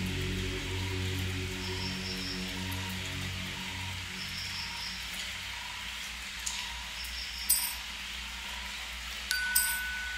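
Ambient electronic background music: sustained low drone tones that fade away about halfway through, over a steady soft hiss, with light high chime notes sounding every couple of seconds and a few brighter chime strikes near the end.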